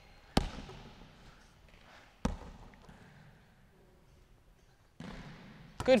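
Two single thuds of a basketball, about two seconds apart, each echoing around the gym hall.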